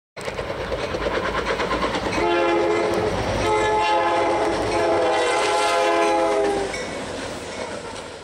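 EMD GP40-2 diesel locomotives running light at speed, with engine rumble and wheels clattering over the rails. The lead unit's multi-note air horn sounds a short blast, then a long one of about three seconds. The rumble drops away near the end.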